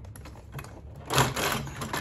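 Plastic extension table of a Singer sewing machine being pulled off the free arm: a few light clicks, then from about a second in a loud scraping clatter lasting about a second as it slides off.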